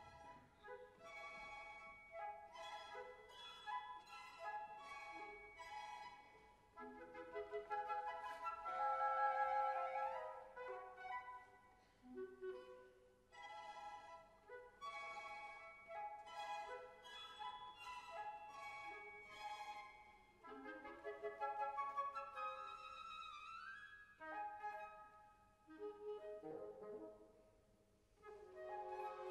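Symphony orchestra with violins playing a soft melodic passage in phrases, swelling briefly and then easing off between phrases.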